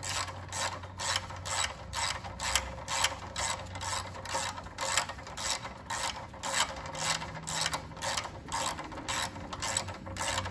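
Ratchet wrench clicking in an even rhythm, about three clicks a second, while running down the nuts that hold the carburetor on.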